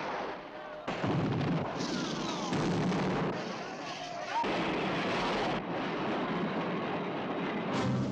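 Gunfire and the din of a film shootout: many rapid shots over a dense clatter, with voices shouting. It jumps suddenly louder about a second in and shifts abruptly several times, as the scenes are cut together.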